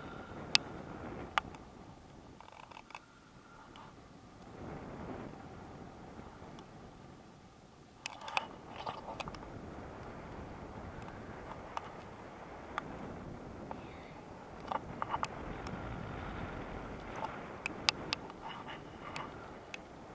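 Airflow rushing over the microphone of a camera carried in flight under a paraglider, rising and falling, with scattered sharp clicks and scraping rustles from the camera being handled, more of them about halfway through and near the end.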